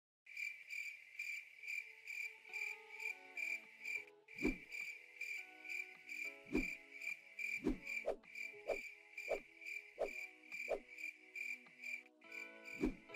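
Cricket chirping in an even pulse, about two and a half chirps a second. Soft music notes come in a few seconds in, and low thuds land now and then from about four seconds in.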